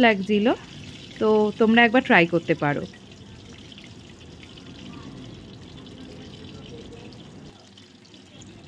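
Paneer fritters in cornflour batter deep-frying in a wok of hot oil: a steady sizzling and bubbling, heard on its own from about three seconds in.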